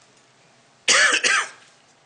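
A person clearing their throat close to a microphone: two loud, short sounds one right after the other, about a second in.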